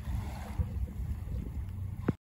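Wind buffeting the microphone: a low, uneven rumble with no other clear sound.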